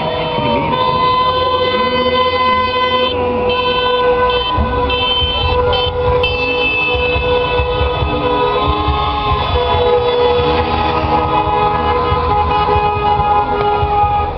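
Car horns honking from a line of slow-moving cars, several held at once in long steady blasts, one of them cut on and off several times partway through, over the low rumble of idling engines.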